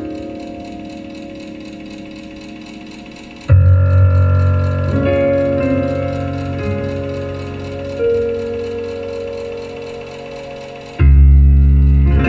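Live music led by a Roland stage piano: held chords ringing and fading, with heavy low chords struck about three and a half seconds in and again near the end.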